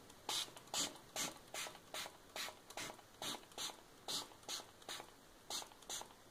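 Hand trigger spray bottle pumped quickly over and over, about fifteen short sprays a bit more than two a second, each a click of the trigger followed by a brief hiss of mist.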